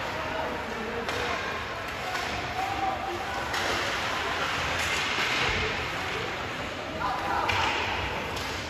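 Ice hockey play in a rink: skates scraping the ice, sticks and puck clacking, and a few sharp knocks, with distant shouting voices.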